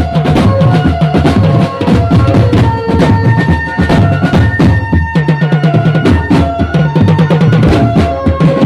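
Live procession music: large bass drums beaten with padded mallets in a fast, dense rhythm, with a melody of held notes over the drumming.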